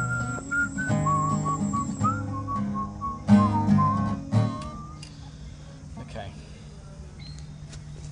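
A man whistling a tune in sliding notes over strummed acoustic guitar chords. Both stop about five seconds in, leaving a low steady hum.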